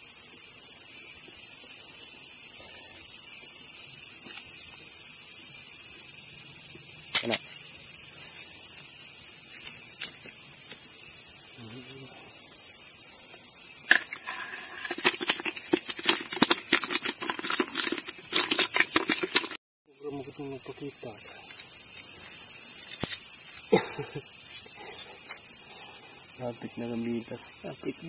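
Steady, high-pitched chorus of night insects. From about halfway through comes a few seconds of rapid clicking and knocking, then the sound drops out for an instant.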